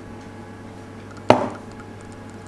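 A single sharp knock, a little over a second in, of a kitchen container set down on a hard countertop, with a brief ring after it.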